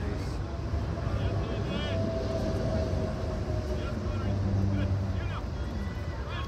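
Distant voices of players and spectators calling out across a soccer field, scattered short shouts over a low steady rumble.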